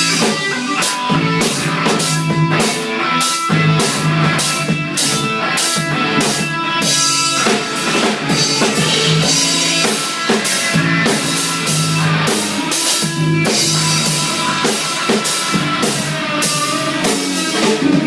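Rock band playing an instrumental passage live: electric guitars over a drum kit keeping a steady beat, with no vocals.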